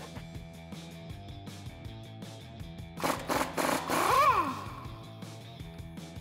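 Impact gun hammering on the nut of the lower strut bolt for about a second and a half, starting about three seconds in, its pitch rising and then falling as it winds down. Quiet background music underneath.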